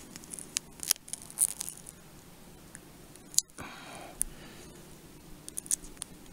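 Duct tape being stretched and pressed onto a plastic knife sheath: scattered soft crackles and clicks, with one sharper click about halfway through.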